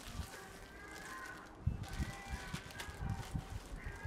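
Plastic packaging rustling and crinkling as compressed sleeping bags in clear bags are handled and stacked on a vehicle bonnet, with a series of dull low bumps from about halfway through.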